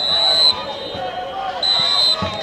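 Referee's whistle, two short steady blasts about a second and a half apart, over the shouting and chatter of a football crowd.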